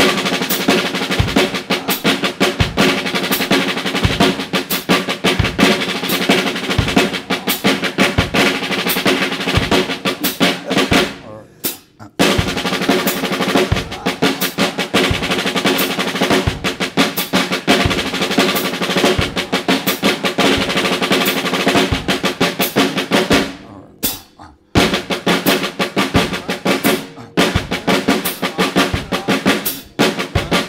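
Snare drum played in rapid, even strokes through rudiment displacement patterns, with the bass drum keeping time underneath. The playing stops briefly about twelve seconds in and again about twenty-four seconds in, splitting it into three phrases.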